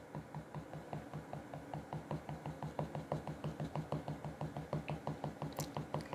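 Fingertips flicking rapidly up across an iPhone's glass touchscreen, a quick run of soft taps at about five a second.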